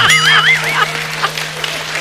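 A comic sound effect: a high warbling tone that wobbles up and down in pitch for about the first second, over a steady low hum.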